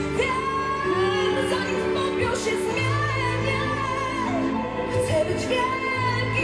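Woman singing a pop song live with band accompaniment; her voice holds long, wavering notes over sustained bass notes.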